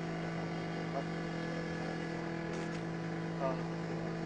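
A steady drone held on one pitch, with a stack of overtones, sounding between lines of a chanted Sanskrit prayer.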